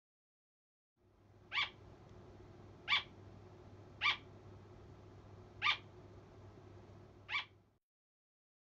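A small animal giving five short, high calls, one every second or so, over faint room noise.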